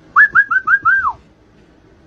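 Someone whistling five short notes in quick succession, the last one sliding down in pitch, over faint street crowd noise.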